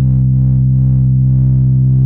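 Steady, loud, low synthesized tone with a stack of overtones: an oscilloscope-music signal whose left and right channels drive the scope's horizontal and vertical deflection, so this tone is what draws the looping green spiral on screen.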